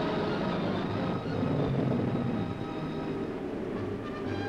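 Radial piston engine of a propeller aircraft running just after starting, a steady mechanical drone.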